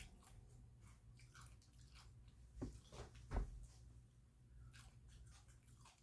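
A person chewing chips: faint crunching throughout, with a few louder crunches a little past halfway.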